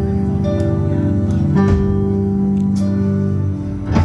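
Live band playing a song: electric guitars and keyboard holding sustained chords over drums, with a few cymbal hits.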